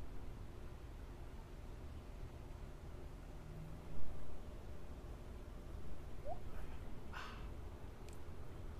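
Steady low outdoor background rumble, with a short bump about halfway through and a brief breathy puff near the end as cigar smoke is blown out.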